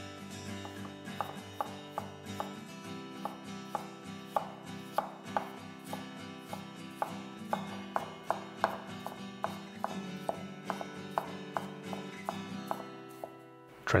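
Chef's knife roughly chopping water chestnuts on a wooden cutting board: crisp knife strokes knock the board at a steady pace of about two to three a second, then stop shortly before the end.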